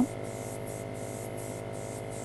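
Grex airbrush spraying a light coat of gold luster color: a faint, steady hiss of air and paint, over a low electrical hum.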